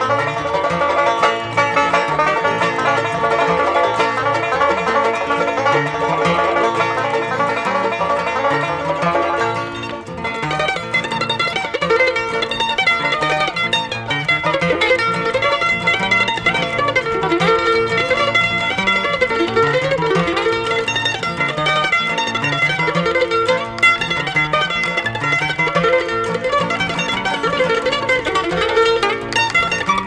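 Bluegrass band playing an instrumental on banjo, mandolin, guitar and upright bass, the upright bass featured.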